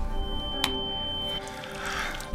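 A steady, high-pitched electronic beep lasting a little over a second, with a single sharp click partway through, over soft sustained background music.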